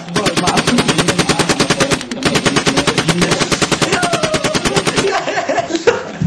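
Machine-gun fire sound effect dubbed over the audio to censor a spoken name: rapid shots at about ten a second, with a brief break about two seconds in, stopping about five seconds in.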